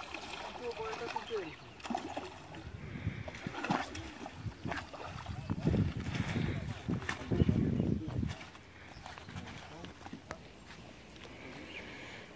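Water splashing and sloshing at the water's edge, loudest in two stretches a little past the middle, with indistinct voices in the background.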